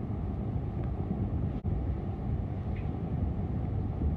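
Steady low rumbling background noise with no distinct events, briefly cutting out about one and a half seconds in.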